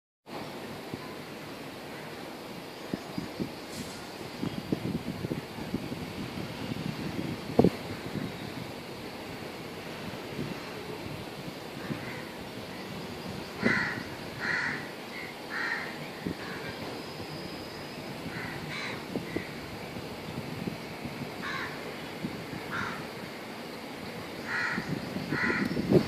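A bird calling from about halfway through, short calls repeated singly and in pairs every second or so. A single sharp knock about a third of the way in is the loudest sound.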